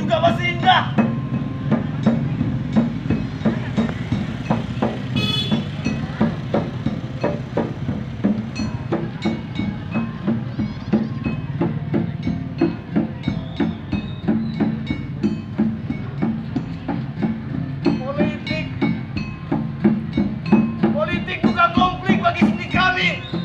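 Live percussion-led music for a performance: a steady low drone under many quick, fairly regular percussive strikes. Voices call out near the start and again over the last few seconds.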